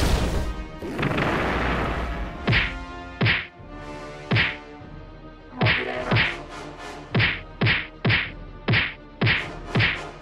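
A crash-like burst of noise, then a run of about ten sharp fight whacks that come faster and faster, over quiet background music.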